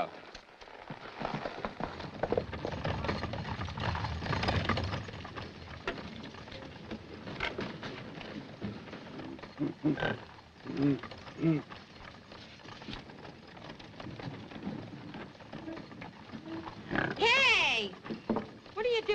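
Horses' hoofbeats over the first few seconds. Then short grunts and, near the end, a loud rising-and-falling howl from a gorilla.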